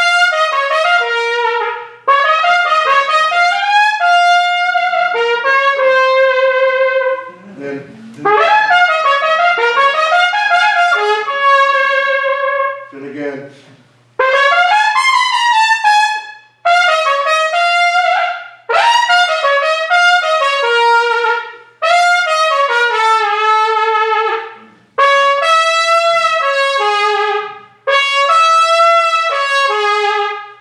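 Solo trumpet playing a loud jazz passage in a series of short phrases separated by brief breaks, several phrases ending in a downward run.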